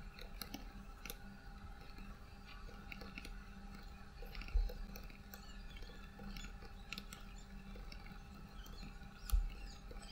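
Faint computer-keyboard typing: irregular, quick key clicks over a low steady hum, with two soft low thumps about halfway through and near the end.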